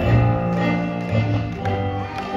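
Music: children striking Boomwhackers, tuned plastic tubes, to play a Christmas tune, with hollow pitched notes and taps over a sustained musical accompaniment.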